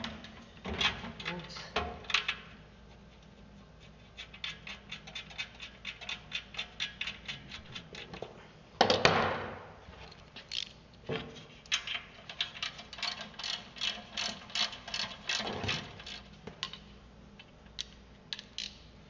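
Hand socket ratchet clicking in long runs of quick, even clicks as the mounting bolts of a new engine are run down on a mower deck. There are a few knocks in the first couple of seconds and one loud clunk about halfway through.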